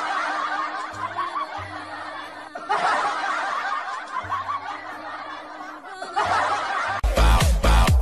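Several people laughing together in three stretches, then about seven seconds in the sound cuts to loud electronic dance music with a heavy beat.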